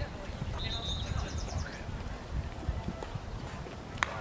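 Wind rumbling unevenly on the microphone, with a bird singing a short run of repeated high notes about half a second in, and faint distant voices.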